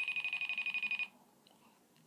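A phone's outgoing FaceTime audio call ringing while the call waits to be answered: one high, rapidly trilling tone lasting about a second.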